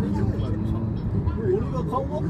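Steady low road and engine rumble heard inside a moving car, with people talking in Japanese over it.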